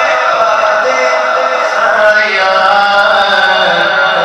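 A man's voice singing a naat, an unaccompanied devotional chant, into a microphone in long held melodic lines.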